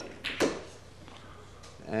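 A sharp click of pool balls colliding, the cue ball striking the object ball about half a second in, over the low murmur of a large hall.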